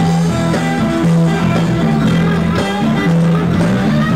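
Live rock band playing, with guitar to the fore over held low notes.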